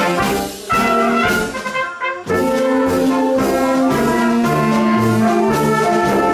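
Marching band playing: trumpets and saxophones hold sustained chords over snare and bass drum, with a pulsing bass line. The music breaks briefly between phrases about half a second and two seconds in.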